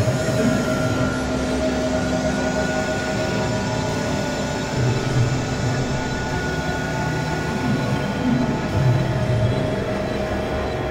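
Experimental electronic drone music: several held synthesizer tones over a dense, rumbling noise texture, with a few low swells rising and falling.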